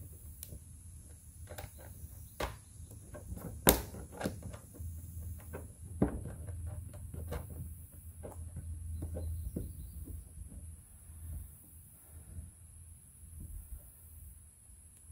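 Scattered small clicks and taps of a metal bolt and wing nut being fitted by hand through a bolt hole in the rim of a plastic Moultrie Deer Feeder Elite drum, with one sharp knock a little over a quarter of the way in.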